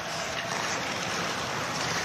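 Steady rushing ambience of a live ice hockey game in an arena, an even hiss with no distinct stick or puck hits.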